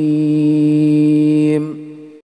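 A male Qur'an reciter holds one long, steady melodic note on the closing word of a verse, then lets it trail off near the end.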